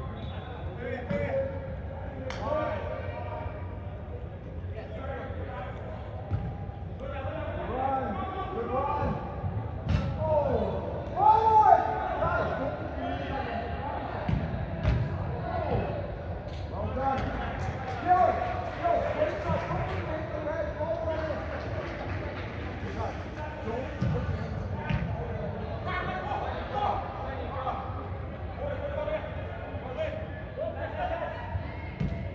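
Voices calling out across an indoor turf soccer pitch, with a loud shout about eleven seconds in. A few sharp thuds of the ball being kicked sound in a large hall.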